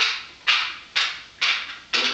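Steady knocking, five sharp knocks about half a second apart, each dying away quickly.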